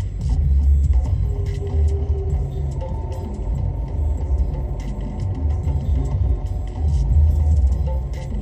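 Low, uneven rumble inside a vehicle cabin that swells several times, under faint background music with a few long held notes.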